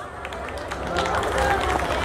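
A large audience clapping and calling out in response to a stand-up joke, growing louder over the two seconds.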